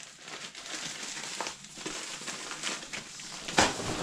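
Plastic packaging crinkling and rustling as it is handled, with one sharp, louder crackle near the end.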